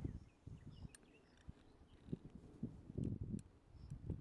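Handling noise from a camera tripod being set up in long grass: irregular low bumps and rustles, with a couple of sharp clicks about one and three seconds in.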